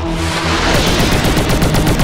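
Cartoon battle-robot guns firing: a rapid machine-gun-like burst of shots, about a dozen a second, starting just under a second in, over a steady rushing noise.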